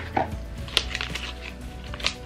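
A pregnancy test's plastic wrapper being torn open by hand, with a few sharp crackles and rustles.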